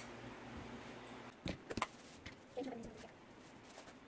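A couple of light clicks of a small measuring spoon tapping against a bowl as baking soda is spooned in, over quiet room tone.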